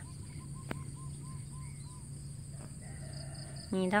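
A rooster crowing faintly for about a second, some three seconds in, over a steady high insect drone. Earlier there is a quick run of about seven short chirps, roughly four a second.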